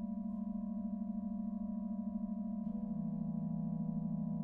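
Organ holding a sustained, slowly building chord with a wavering beat in its low notes; a higher note enters just after the start, and about two-thirds of the way through the bass steps down as another note is added.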